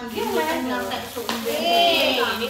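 Plastic parcel wrapping crinkling and rustling as it is handled, with a sharper crackle about a second in, under women's overlapping chatter.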